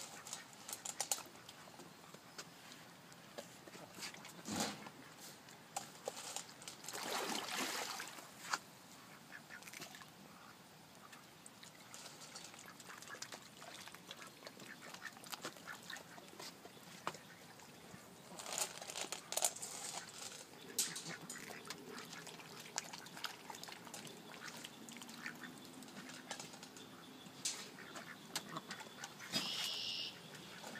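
White domestic ducks quacking now and then on the water, with scattered splashes and small clicks of water.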